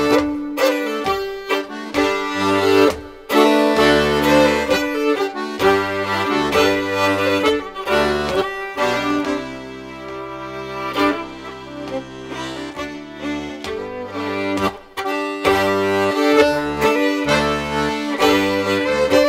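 Melodeon and fiddle playing an instrumental break of a traditional folk tune, the melodeon's bass chords pulsing under the melody. The playing thins and drops in level around the middle, then comes back fuller a few seconds before the end.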